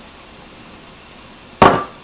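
One sharp clack of a dish being set down on the kitchen counter about a second and a half in; otherwise quiet room tone.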